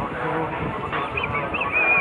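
A high, thin, wavering squeal starting about a second in, over the steady rumble of riding through a railway tunnel.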